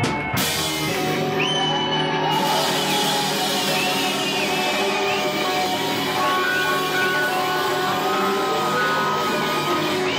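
Live afro-jazz-funk band music: the drum beat stops just as it begins and the band holds one long sustained chord under a cymbal wash, with sliding melodic lines above it, the drawn-out ending of a song.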